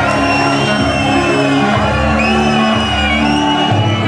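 Ska band playing live, with shouting over the music.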